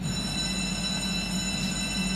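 A steady whine of several fixed high tones over a low hum, starting abruptly.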